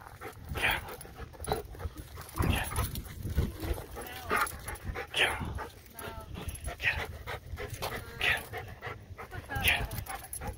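Black Labrador and foxhound play-fighting, giving short vocal sounds about once a second, with some drawn-out whines between them.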